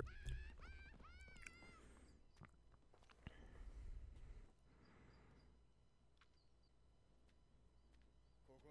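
Near silence: room tone, with a few faint, brief sounds in the first half.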